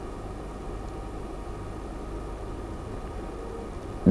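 Steady low hum and hiss of background noise with nothing else happening: studio room tone while the line waits for a remote guest who does not come through.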